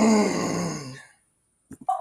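A person groaning: one drawn-out groan, about a second long, falling in pitch, followed near the end by a few short clicks and a brief vocal sound.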